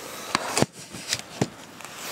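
Handheld camera being moved and set down, its microphone rubbing against jacket fabric, with about four sharp knocks and clicks of handling.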